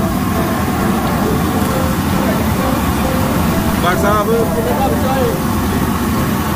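A steady, loud low rumble with voices talking faintly in the background.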